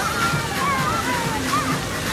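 Fountain jets splashing steadily onto wet paving, with music and voices over it.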